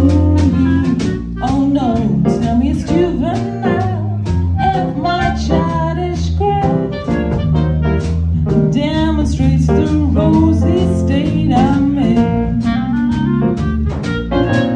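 A woman singing a jazz song into a microphone with a small live band: keyboard, clarinet, bass notes and drum kit accompanying her.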